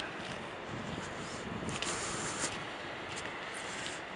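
Low, steady outdoor background noise, with a few faint soft clicks.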